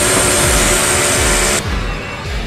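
Table saw running loudly over music with a low pulsing beat; the saw sound cuts off suddenly about one and a half seconds in.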